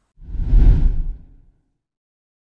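A whoosh transition sound effect that swells up and dies away within about a second and a half.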